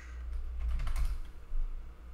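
Typing on a computer keyboard: a few light keystrokes, with one louder key press about one and a half seconds in, as a line of code is finished and run.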